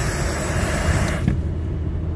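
In-cabin running noise of a 1992 Toyota Corolla with the 2C diesel engine while driving: a steady low engine and road rumble. A hiss above it cuts off about a second in.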